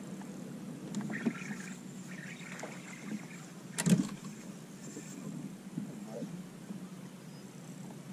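Steady low hum on a fishing boat, with a sharp knock about four seconds in and a lighter one about a second in.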